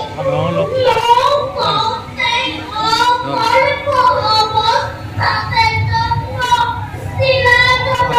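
A high female voice sings in phrases through a public-address system, with its pitch gliding between held notes.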